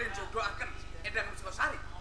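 Actors' animated stage dialogue in Javanese, amplified through a PA sound system, with a steady low hum underneath.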